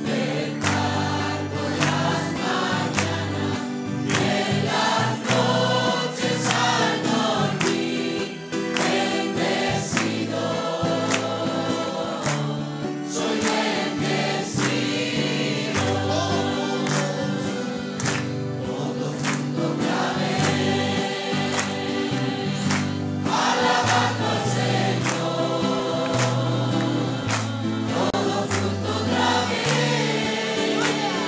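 A congregation singing a Spanish worship song together, with instrumental accompaniment: a stepping bass line and a steady beat.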